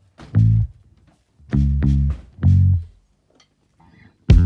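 Song intro: low plucked guitar notes played in three short bursts with silences between them.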